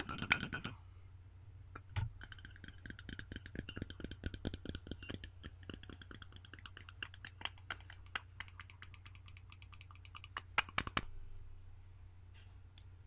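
Fingernails tapping quickly on a ceramic mug close to a microphone, the mug ringing faintly with each tap, with a few louder taps near the end. A steady low electrical hum runs underneath.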